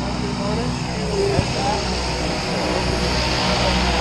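A steady, low mechanical drone, like a running engine, with faint voices talking in the background.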